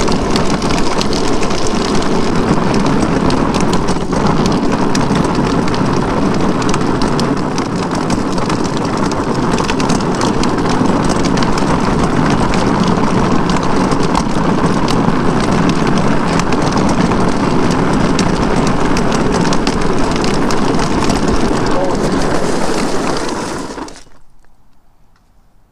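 Drift trike rolling over rough asphalt at speed, with a steady crackling road rumble and wind noise on the mounted microphone. The noise falls away in the last second as the trike comes to a stop.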